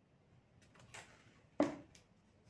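Quiet handling sounds as a small sponge is loaded with contact adhesive on a plastic tray: a few faint taps and rustles, then one short louder sound about one and a half seconds in.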